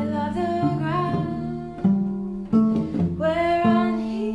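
Cello music in a slow traditional folk air: a low cello line changing notes every half-second or so under a higher melody with vibrato and sliding pitch, from more than one cello part layered together.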